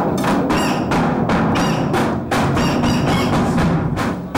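Festive Turkish street-band music: a davul drum beating a steady rhythm under a reed-instrument melody.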